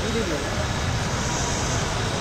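Heavy downpour on a road: a steady hiss of rain and water spray, with vehicles passing through it.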